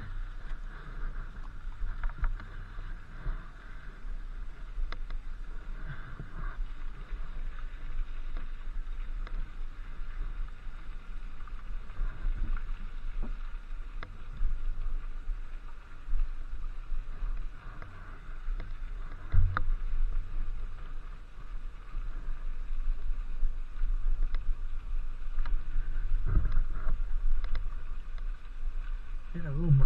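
Inmotion V8 electric unicycle being ridden along a path: a steady rumble and hiss of tyre and air noise on the microphone, with a couple of louder thuds from bumps, one about two-thirds of the way in and one near the end.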